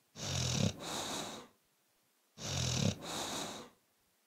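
Small dog snoring in its sleep: two snoring breaths about two seconds apart, each a low buzzing rattle that trails into a hiss.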